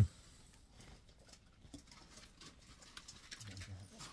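Faint, scattered clicks and rustles of hands handling small objects, after one short spoken word at the very start.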